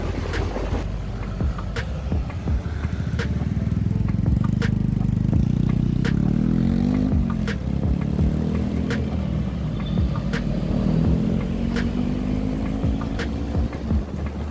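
Motorcycle engine running under load as the bike rides in traffic: its pitch climbs as it accelerates, drops about seven seconds in, then climbs again. A short click recurs about every second and a half.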